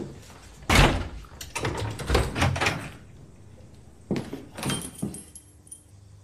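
An apartment front door shutting with a loud thud under a second in, followed by a run of knocks and rustling. About four seconds in come two more thuds, then a light metallic jingle of keys.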